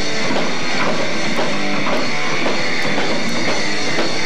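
Live rock band playing loudly and continuously: electric guitars over a drum kit with a steady beat.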